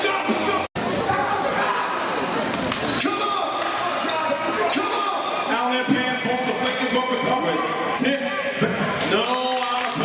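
Basketball dribbled on a gym's hardwood court during live play, with short knocks from the ball and shouting voices echoing in the hall. The sound drops out for an instant under a second in.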